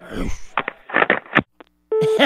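A telephone call being hung up: a few clicks and knocks come over the phone line, then the line suddenly goes dead, with a brief faint low tone near the end.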